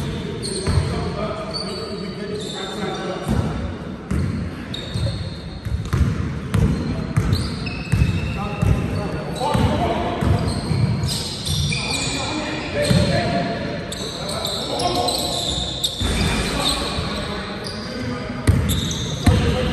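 A basketball dribbling on an indoor court, repeated bounces echoing in a large sports hall, with rubber-soled shoes squeaking on the floor as players run.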